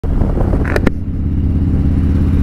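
Harley-Davidson Road Glide V-twin running steadily while riding, through a 2-into-1 exhaust. Two short sharp clicks come about three-quarters of a second in.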